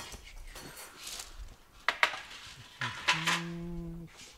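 Crockery and cutlery clinking, with two sharp knocks about halfway through, as plates and a knife are set out to cut a cake. Near the end a person holds one steady note for about a second, like a hummed "mmm".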